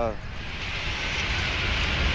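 Cockpit noise of a Boeing 777 at main-gear touchdown: a steady hiss of airflow over a low rumble from the wheels on the runway, slowly growing louder.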